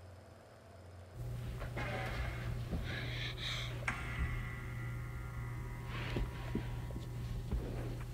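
A steady low hum starts suddenly about a second in and runs until it cuts off at the end, with scattered scuffs and knocks over it.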